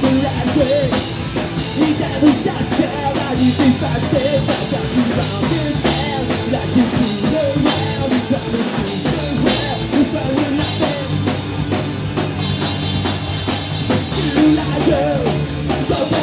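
Punk rock band playing live, loud and steady: drum kit with cymbals driving the beat under electric guitar and bass.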